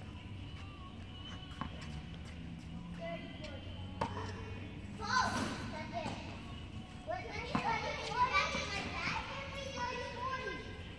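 Faint children's voices calling out across a large hall during a tennis rally, with a few sharp knocks of a tennis ball being struck or bouncing on the court.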